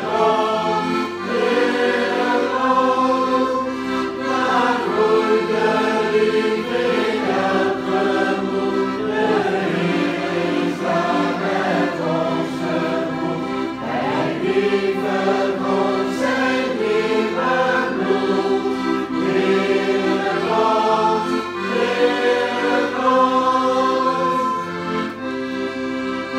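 A group of people sings a Dutch Christian hymn together, accompanied by an accordion.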